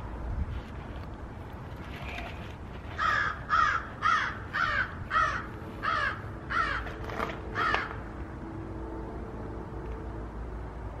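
A crow cawing: a run of about nine harsh caws, roughly two a second, starting about three seconds in and stopping about eight seconds in.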